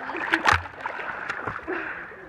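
Pool water splashing as a swimmer's arms strike the surface in backstroke. A loud splash comes about half a second in, over steady lapping water close to the microphone.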